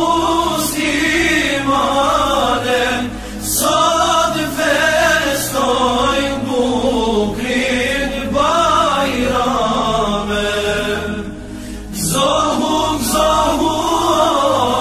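Islamic devotional chant (nasheed-style vocal music): a melismatic sung line with gliding, held notes, pausing briefly about three seconds in and again near the end.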